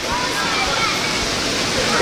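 Steady rush of water cascading off the mushroom-shaped water-play fountains of a leisure pool, with faint voices calling in the background.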